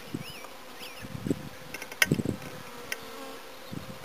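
Honeybees buzzing as a steady hum around a hive during a package installation, with a few sharp knocks as hive parts and the package can are handled.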